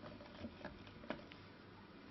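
A few faint ticks and light scrapes of a knife blade nicking string-spacing marks into a sanded willow lyre bridge, the sharpest tick about a second in.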